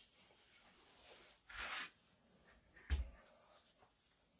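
Faint handling of an axe and its unfinished leather sheath: a brief leather rustle about one and a half seconds in, then a single dull knock about three seconds in.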